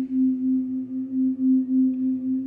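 Crystal singing bowls sounded with mallets: one steady low hum that swells and fades in an even pulse about three times a second.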